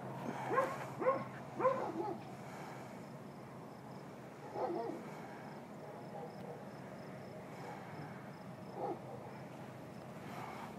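A dog giving short, rising-and-falling whines: three in quick succession near the start, then single ones around the middle and near the end. Faint, steady insect chirping runs underneath.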